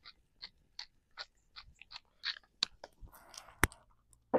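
Wooden salt or pepper mill being twisted by hand, giving a steady run of short crunching grinds, about two to three a second. A little past three seconds in there is a brief hiss and one sharp click.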